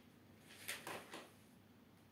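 Faint rustling of plastic cling film being pulled and stretched over a plastic bowl of dough, a few short soft crinkles near the middle.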